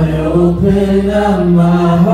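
Worship band playing live: voices singing long held notes over acoustic guitar, electric guitar and bass, the pitch moving to a new note about half a second in and again past the middle.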